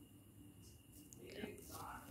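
Near silence: room tone, with faint soft sounds in the second half just before speech resumes.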